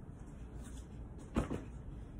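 A knock about one and a half seconds in, followed at once by a softer one, over faint room noise.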